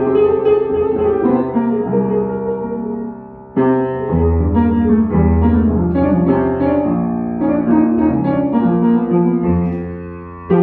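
Upright piano played with both hands: sustained chords over a low bass line. One phrase dies away about three and a half seconds in, then a loud new chord starts the next.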